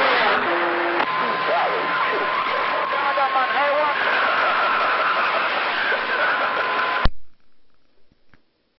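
Magnum radio receiver hissing with static, faint garbled voices of distant stations and several steady heterodyne whistles. About seven seconds in it cuts off suddenly with a pop as the radio is keyed to transmit.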